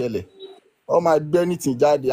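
Speech only: a person talking, with a short pause a little over half a second in.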